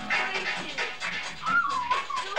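Music with fast strummed acoustic guitar. Near the end a high wavering wail bends up and then down.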